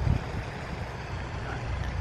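Outdoor background noise: a steady low rumble with a light hiss and no distinct event, a little louder for a moment at the start.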